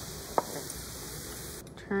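Diced carrots, peas and onion sizzling in a frying pan while a wooden spoon stirs them, with one sharp click about half a second in. The steady sizzle cuts off suddenly near the end.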